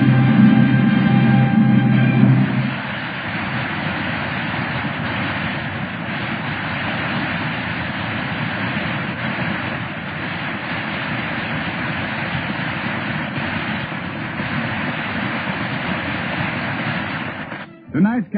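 A held closing chord of the program's music ends about three seconds in. A studio audience then applauds steadily and stops just before the end.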